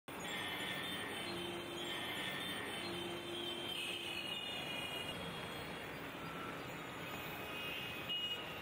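Dense city street traffic of cars, auto-rickshaws and motorcycles: a steady hum of engines and tyres, with several horn blasts of about a second each.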